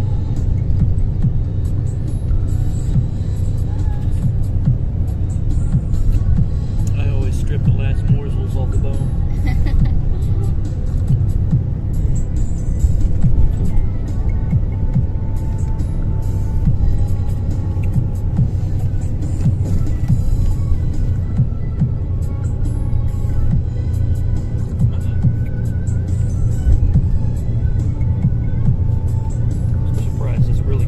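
Steady low engine and road rumble of a moving bus, heard from inside the passenger cabin.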